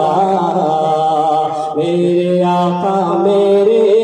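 A man's solo voice singing a naat unaccompanied into a microphone. He holds long, wavering, ornamented notes, with a short breath break about two seconds in.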